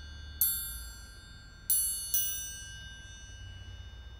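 Three strikes on a bell-like metallic percussion instrument, the first about half a second in and the next two close together past the middle, each ringing out and slowly fading.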